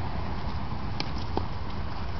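Steady low rumbling noise, with two short knocks, one about a second in and another a moment later.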